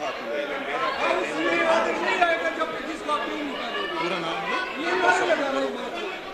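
Many people talking at once: overlapping chatter of assembly members, with no single voice standing out.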